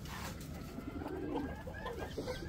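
Soft, faint calls from a backyard flock of birds, with a low call just after a second in.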